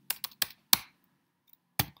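Computer keyboard keystrokes deleting characters: a quick run of sharp clicks in the first second, the last of them the loudest, then one more click near the end.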